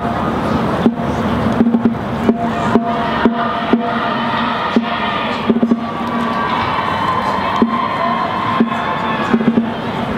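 High school marching band playing on the field: scattered drum hits, joined about three seconds in by held brass chords, over a background of crowd noise.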